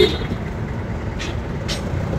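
Steady low rumble of road traffic, with a short sharp sound right at the start and two faint clicks later on.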